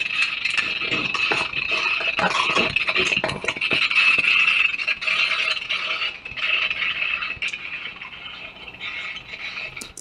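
Continuous metallic jangling and rattling with scrapes and clicks: loose gear on a police officer moving with a body-worn camera. It grows quieter in the last couple of seconds.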